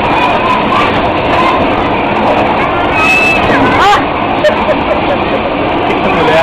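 Loud, steady din of a bumper-car rink while the cars are running: the rumble of the cars mixed with riders' voices and shouts, and a short high squeal a little past the middle.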